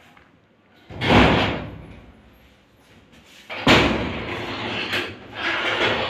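A large sheet of paper being lifted and shaken: a sudden loud flap about a second in, then another near the middle that runs on as a crackling rustle.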